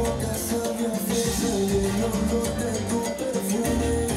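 Salsa music playing with a steady beat: a repeating bass line and melody over percussion.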